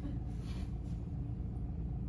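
Steady low rumble of indoor room background noise, with a brief soft hiss about half a second in.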